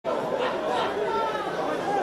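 Indistinct voices chattering, several people talking over one another at a steady, moderate level.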